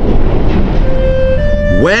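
A steady low rumbling rush of flour pouring down a hopper chute. Background music holds one note about halfway through, then steps up to a higher note.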